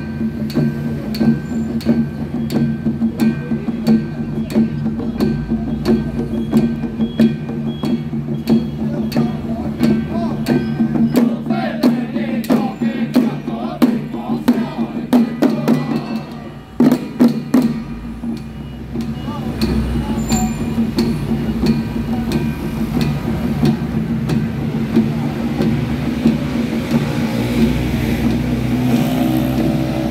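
Taoist little-ritual troupe performing: many hand-held frame drums on wooden handles beaten rapidly with sticks, with a small brass gong, over low male voices chanting in unison. The drumming drops out briefly about 17 seconds in and comes back sparser.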